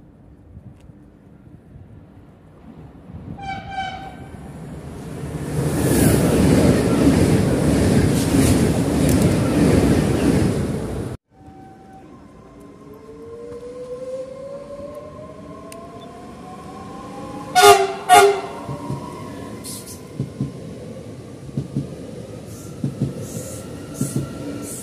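A train passes at speed, a loud rushing of wheels and air, after a short horn note, and the sound cuts off abruptly. Then a Trenitalia regional train approaches the platform with a rising electric whine, sounds two short horn blasts, and runs past with light clicks of wheels over the rails.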